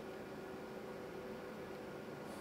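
Steady low hiss with a faint, even hum: the room tone of electronic bench equipment running.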